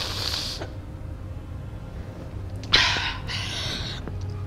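A crying woman sniffing and drawing tearful breaths: one short sharp inhale at the start and a longer, louder one about three quarters of the way through, over a low steady hum.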